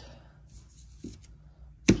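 Faint light clicks as a loose nickel is handled and laid down on a paper towel, then one sharp knock near the end.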